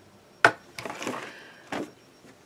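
A cardboard product box set down with a sharp knock, followed by soft rustling of handling and a second knock near the end.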